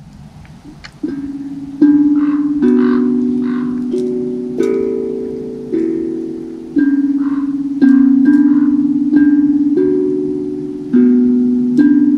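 Handpan (hang drum) played by hand: single metal notes struck about once a second, each ringing and slowly fading into the next. It starts soft and gets much louder about two seconds in.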